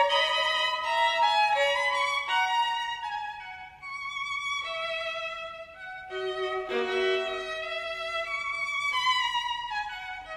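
Background music: a violin playing a melody of sustained bowed notes, with lower notes joining in after about seven seconds.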